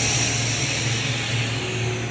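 Steady low hum with an airy hiss from commercial glass-door freezer display cases, their compressors and circulating fans running; the hiss is strongest at the start and fades.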